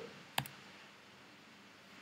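A single sharp click, a laptop key pressed to advance the presentation slide, about half a second in, followed by faint room tone.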